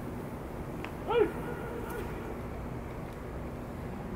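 Steady open-air ballpark background noise, with one short, loud shouted call about a second in that rises and then falls in pitch.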